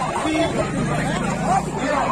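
A crowd of men talking and shouting over one another in a scuffle, many voices at once, with a steady low hum underneath for much of the time.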